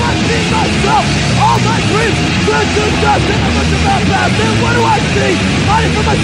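Metallic hardcore punk band playing from a 1985 demo tape: distorted guitars, bass and drums at a steady loud level, with repeated bending, arching pitch glides over a thick, noisy low end.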